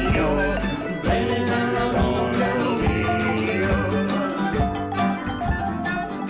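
Live country-folk band playing an instrumental passage: fiddle over strummed acoustic guitar, keyboard, upright bass and drums keeping a steady beat.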